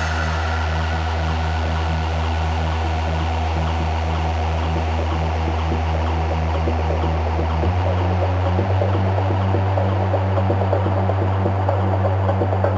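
Techno DJ mix in a breakdown with no kick drum: a sustained deep bass drone under a pulsing synth line. About eight seconds in the bass moves to a higher note.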